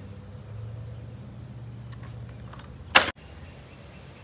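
A steady low hum, with one short, loud, sharp noise about three seconds in that breaks off suddenly.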